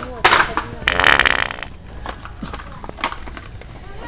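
Wet fart sounds from an original Sharter fart-noise prank device: a short one near the start, then a longer, louder one about a second in.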